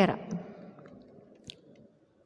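One word spoken at the start, then low background with a few faint, short clicks, the sharpest about one and a half seconds in.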